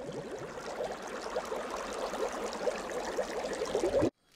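Water bubbling and gurgling, with many quick chirping bubble sounds over a steady wash; it stops abruptly at the end.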